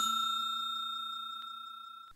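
A bell-like ding sound effect, struck just before and ringing on as one clear steady tone that fades away evenly.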